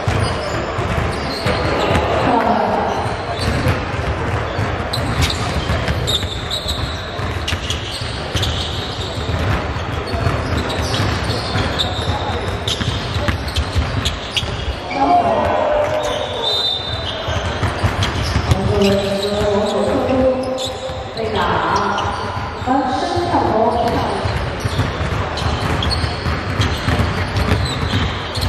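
A basketball bouncing on a hardwood gym court, with people's voices in the hall, most plainly through the second half.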